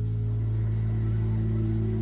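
A steady low hum of several held tones, unchanging in pitch and level.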